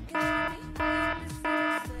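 Fire alarm sounding: three buzzing beeps, each about half a second long, in a steady rhythm.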